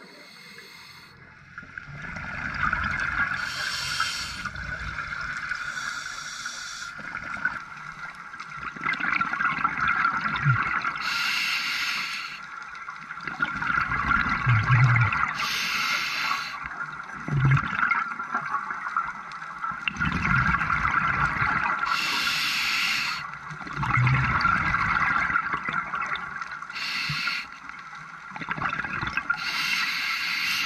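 Scuba diver breathing through a regulator underwater: a steady hiss, with a gurgling rush of exhaled bubbles every four to six seconds.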